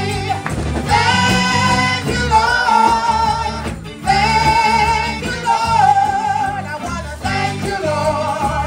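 A woman singing a gospel worship song into a microphone over instrumental backing, holding long notes with vibrato.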